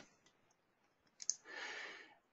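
A short, sharp click about a second and a quarter in, then a soft intake of breath near the end, in an otherwise near-silent pause.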